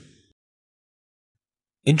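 Near silence: a pause between two spoken phrases of narration, with the end of one phrase trailing off at the start and the next beginning just before the end.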